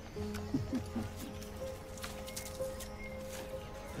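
Soft background score of sustained, held chords, with a few light, irregular taps over it.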